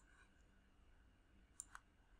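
Near silence broken by two faint computer-mouse clicks in quick succession about one and a half seconds in.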